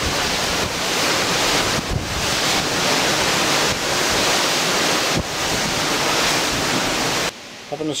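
Wind buffeting the microphone in gusts over the steady rush of the sea along a moving cruise ship's side. It cuts off suddenly near the end.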